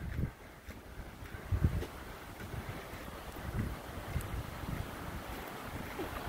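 Footsteps on a dirt and gravel road with a few dull thumps, over a steady rushing noise that builds about a second and a half in and then holds.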